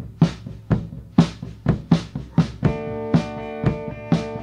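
A rock band starting a song: a drum kit playing a steady beat of about two hits a second over a low bass line. A held guitar chord comes in over the drums about two-thirds of the way through.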